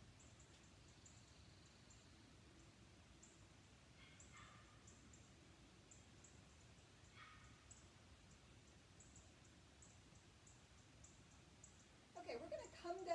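Near silence: room tone, with two faint short chirps about four and seven seconds in.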